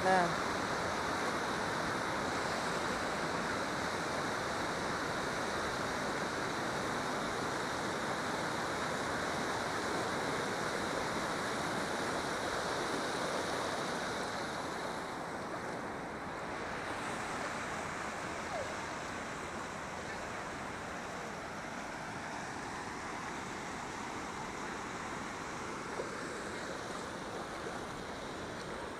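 Steady rush of white water pouring over a concrete river spillway, a little quieter from about halfway through.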